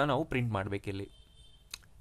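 A man speaking briefly, then a single computer mouse click about three-quarters of the way through, in a quiet pause.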